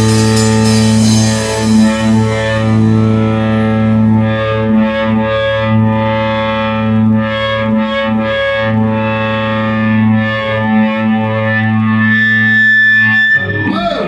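Live rock band with distorted electric guitar and bass guitar sustaining one loud ringing chord while the drummer hits the cymbals. Near the end a single high tone rises out of the chord, and the band cuts off sharply about thirteen seconds in.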